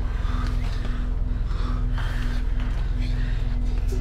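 Suspense film score: a low, steady drone with a tone pulsing on and off about twice a second, and a person's hard breathing coming in short gasps over it.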